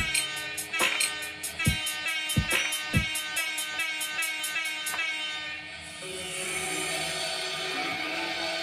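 Electronic dance music clips playing back from Ableton Live: a beat with fast, regular hi-hat ticks and scattered kick drum hits that drops out about five seconds in, leaving a sustained synth wash and held tones.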